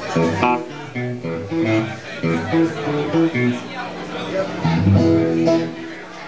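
Guitar and upright bass playing a loose run of separate plucked notes at changing pitches during a band's soundcheck.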